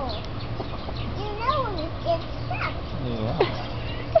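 Wordless voice sounds: one drawn-out rising-and-falling call about a second and a half in, then a few short falling ones near three seconds, over a steady low hum.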